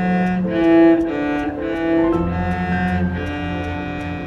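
A bowed cello playing a slow line of held notes that change pitch every half second or so, over a faint, evenly spaced ticking beat.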